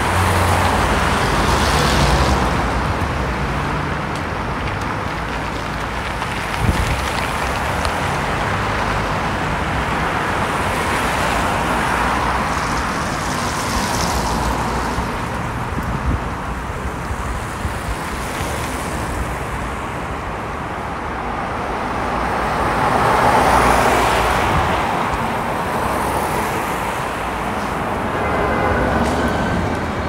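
City street traffic: cars driving past on a wide avenue, a steady wash of road noise that swells as single cars go by, loudest about three-quarters of the way through. A single short knock about a third of the way in.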